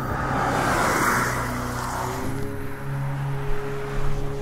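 A 2024 Polestar 2 electric car passing close by: a rush of tyre and wind noise that swells about a second in and then fades. Steady background music plays underneath.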